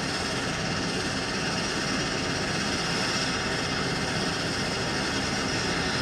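ATR 72 turboprop engine running steadily on the ground, a constant rush of noise with a faint steady high whine. It is the single engine kept running while it is set to hotel mode, the propeller held by its brake so the engine supplies the aircraft's power and air without an APU.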